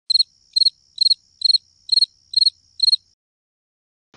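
Cricket chirping sound effect: seven evenly spaced high chirps, about two a second, over a thin steady high tone, stopping about three seconds in. It is the stock "crickets" gag for silence.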